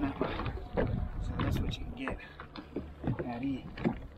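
Small waves slapping and sloshing against the hull of a jet ski drifting on open sea, in short irregular splashes, with a man's brief wordless vocal sounds.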